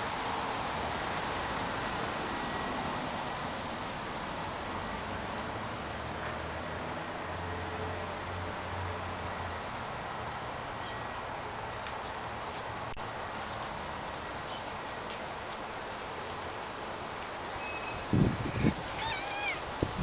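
Steady outdoor background noise, with a faint low hum for a couple of seconds near the middle. Near the end come a few brief, loud rustling knocks as a cat climbs into a leafy bush.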